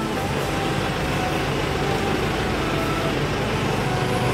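Steady background noise with a low, even hum and no breaks.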